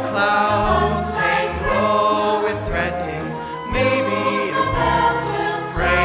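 Mixed-voice high school choir singing a song together in harmony.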